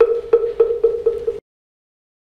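Moktak (wooden fish) struck in a quickening roll of hollow, pitched knocks, marking the start of a break; it cuts off suddenly about one and a half seconds in.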